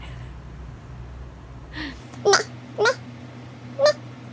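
A baby making a few short, high-pitched babbling squeals in the second half, over a low steady room hum.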